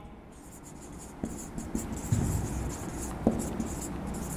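Marker pen writing on a whiteboard: a run of short, irregular scratching strokes, with two sharper clicks, one about a second in and one near the end.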